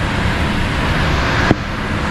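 Heavy thunderstorm rain and high wind in the trees, a steady loud rush, with one sharp click about one and a half seconds in.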